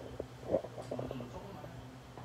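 Faint, brief murmured speech over a steady low room hum.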